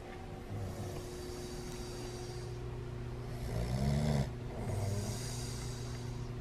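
A person snoring in bed: a breathy intake, then a low snore that rises and falls in pitch about three and a half seconds in, the loudest part, followed by another breath.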